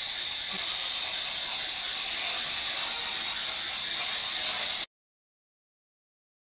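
Steady radio static hiss from an SB7 spirit box sweeping through stations, with no clear voice or tone in it; it cuts off abruptly about five seconds in.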